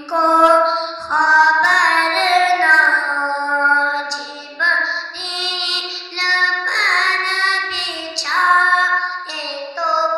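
A boy singing solo into a handheld microphone, a devotional melody in several long, held phrases with short breaks between them.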